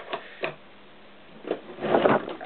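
A few light metallic clicks and taps of hand tools on the engine's flywheel and casing, then a rustling, scraping handling noise near the end as the camera is knocked and nearly falls.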